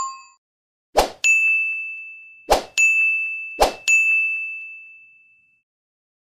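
Animated end-screen sound effects: three times, a short pop is followed by a bright bell-like ding that rings and fades away over a second or two, the three coming over about three seconds.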